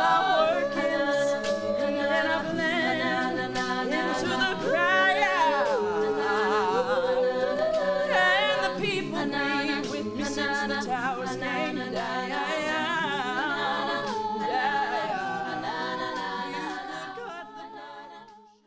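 A mixed-voice a cappella group singing, a lead voice over sustained backing harmonies with no instruments. The song fades out near the end.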